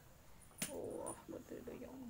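A sharp tap about half a second in, then a rough, wordless voice making low grunting sounds.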